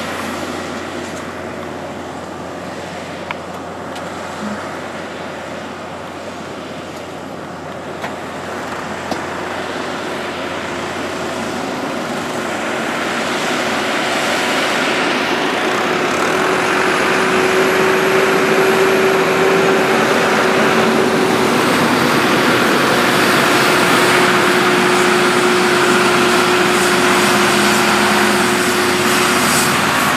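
Farm tractor engine running, getting louder through the first half as the tractor comes close, then holding steady.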